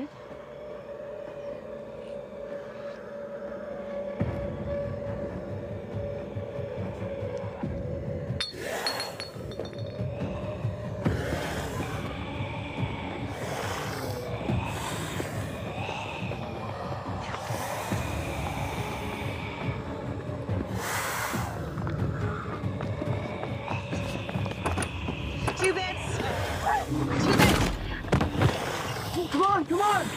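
Horror film soundtrack: tense score music with a held tone, joined by a low rumble about four seconds in. Several sudden crashes or noise bursts follow through the middle, and there are loud vocal cries near the end.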